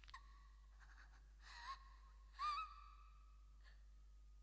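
Near silence, broken by two faint, brief wavering high-pitched sounds about one and a half and two and a half seconds in.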